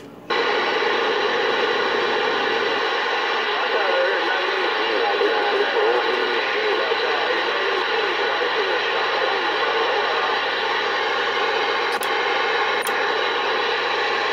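Galaxy CB radio's speaker hissing with loud steady band static that cuts in suddenly just after the microphone is released, with faint warbling, garbled voices buried in the noise. Two short clicks near the end.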